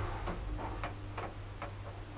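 Light, regular clicking, about three clicks a second, over a steady low hum, from a Gebauer traction lift car that has just come to a stop at its floor.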